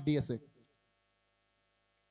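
A man's speech through a microphone stops about half a second in, leaving near silence with a faint steady electrical hum.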